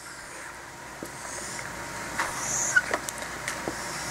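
Marker being drawn across a whiteboard in long strokes, with a few short ticks and a brief high squeak from the tip on the board.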